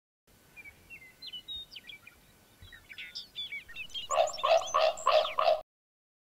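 Birds calling: a scatter of short, sliding high chirps and whistled notes, then a run of five louder, harsher calls at about three a second, cut off suddenly near the end.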